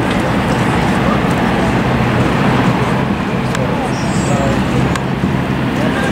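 A steady low rumble of background noise, with faint voices of people talking underneath it.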